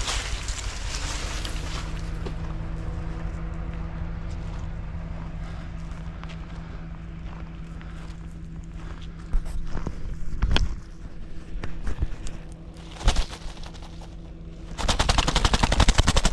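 A vehicle driving along a rough forest dirt track: branches scrape along the body at the start, then the engine hums steadily under the rumble of the ride, with a couple of sharp knocks near the middle. Near the end a loud, fast rattle of clicks sets in.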